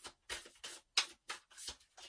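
A deck of tarot cards being shuffled in the hands: about six short, sharp card snaps, roughly three a second.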